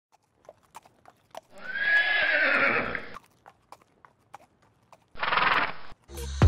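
A horse whinnying once in a long call about a second and a half in, with scattered hoof clicks around it and a shorter pulsing horse call near the end.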